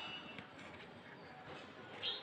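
Faint, steady outdoor background noise with no distinct events.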